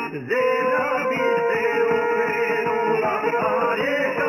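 Serbian folk (izvorna) music: violin and plucked strings playing, with some male singing. The sound dips briefly about a quarter second in, then comes back fuller on a held note.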